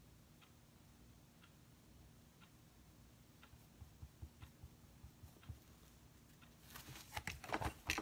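Quiet room with a faint tick about once a second, then a quick run of clicks and light knocks near the end as painting supplies are handled at the table.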